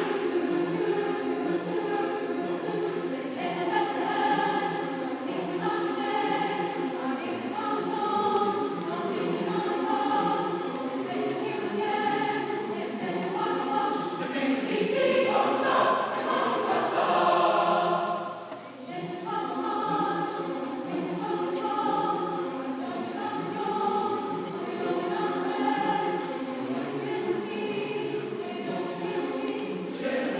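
Large mixed choir of men's and women's voices singing sustained chords. The singing swells louder a little past the middle, breaks off for a brief breath about two-thirds through, then carries on.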